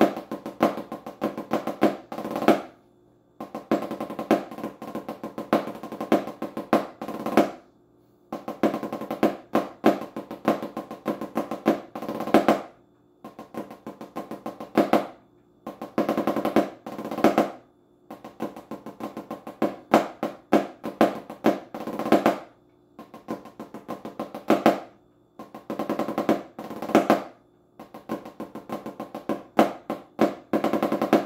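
Rudimental snare drum part played with wooden sticks on a practice pad with a drumhead: fast strokes and rolls with a light ringing tone, in phrases of a few seconds broken by short pauses.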